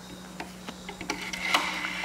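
Rotary dial of an antique wooden wall telephone being turned and running back, giving a run of light clicks.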